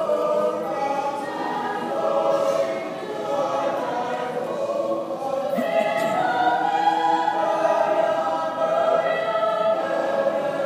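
A mixed high-school choir singing continuously in sustained, shifting chords, heard from back in the audience seats of a large auditorium.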